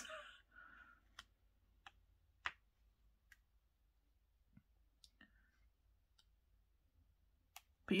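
Faint, irregular clicks, about one a second, from a diamond painting drill pen picking up and setting small resin drills onto the canvas.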